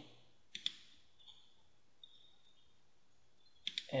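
Computer mouse clicking: two clicks about half a second in, a couple of faint ones in the middle, and a quick run of clicks near the end.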